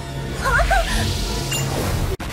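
Animated-series soundtrack: background music over a steady low drone. About half a second in come a few short, high, squeaky chirps, and near the end a quick rising sweep.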